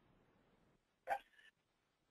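Near silence, broken about a second in by one brief vocal noise from the presenter between sentences.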